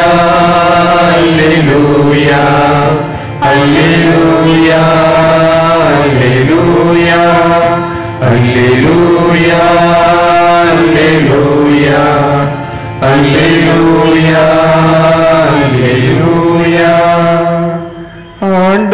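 Catholic priest chanting a liturgical prayer solo into a microphone, in long sung phrases of a few seconds each with short breaks for breath. A steady low note is held underneath.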